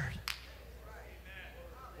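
A single sharp snap just after the preacher's voice stops, then faint voices in the room over a low steady hum.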